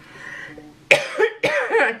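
A woman coughing, two sharp coughs about a second in after a breath, from a tickly, hoarse throat.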